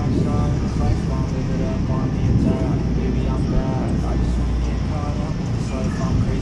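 Steady low rumble of storm wind on the microphone, with a voice talking over it in short phrases.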